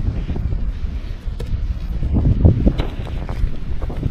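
Wind buffeting the microphone: a loud, gusty low rumble that swells and fades, with a few faint clicks.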